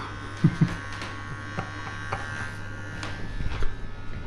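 Cordless electric hair clippers running with a steady buzz.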